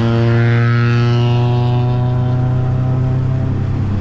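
2000 Honda Civic Si's VTEC four-cylinder engine running under way through a catless exhaust with a Comptech header, A'PEXi mid-pipe and Spoon N1 muffler: a steady, loud droning exhaust note.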